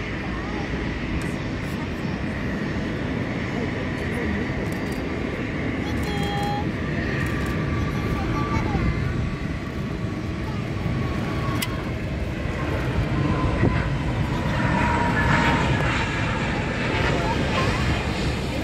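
Jet airliner engines heard at a distance: a steady rumble that grows louder in the last few seconds.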